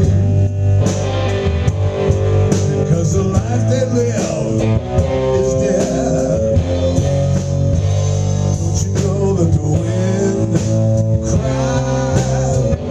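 Live blues-rock trio playing: electric guitar on a vintage mahogany Fender Stratocaster, with electric bass and a drum kit.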